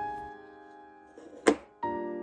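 Soft background piano music, a chord dying away and a new one struck near the end, with a single sharp click about one and a half seconds in.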